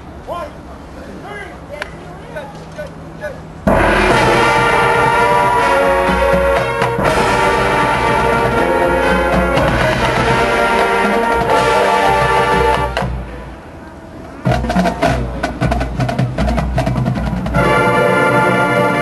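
Marching band with brass and drums: after a few quieter seconds the full band comes in with a sudden loud hit about four seconds in and holds brass chords over the drums. The sound dies away briefly at about 13 seconds, then sharp drum strikes lead the brass back in near the end.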